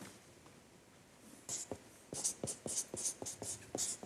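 Pen writing on a pad of paper: after a quiet first second, a quick run of about ten short pen strokes.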